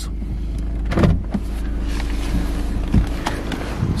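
A click about a second in, then a small electric motor in the car's door whirring for about two seconds, over a steady low hum from the car.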